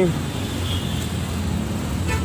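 A car engine idling: a steady low hum.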